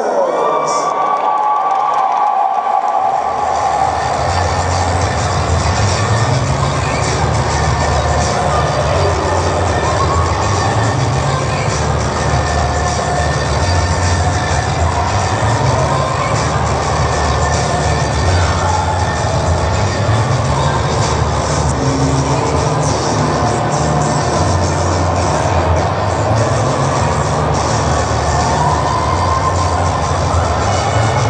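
Music with a strong bass beat, with a crowd cheering and shouting over it. The bass beat comes in about three seconds in.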